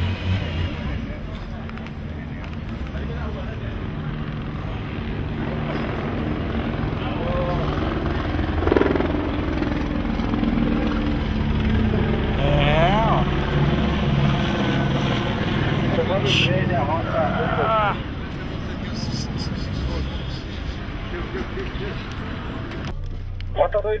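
Steady low rumble of police vehicle engines, with indistinct voices calling out a few times midway through.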